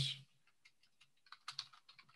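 Computer keyboard typing: a short run of faint, separate keystrokes, bunched about a second and a half in, as one spreadsheet cell is retyped.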